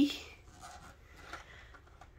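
Faint rustling and light plastic clicks of large Mega Bloks building blocks being handled inside their zippered plastic storage bag.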